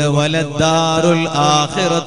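A man's voice in a drawn-out, chant-like sermon delivery, over a steady low drone.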